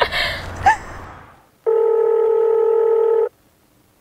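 Telephone ringback tone: one steady ring of about a second and a half, starting and stopping abruptly partway through, as an outgoing call rings on the other end.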